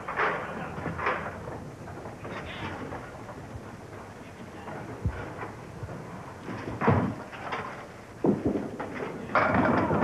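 A candlepin bowling ball is delivered with a loud thud onto the wooden lane and rolls, then knocks into the wooden candlepins, which clatter down near the end. All of it sits over the steady murmur of a bowling alley crowd.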